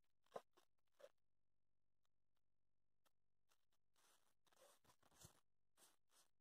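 Near silence, with a few faint, scattered rustles of cotton fabric being handled as a sewn piece is turned right side out.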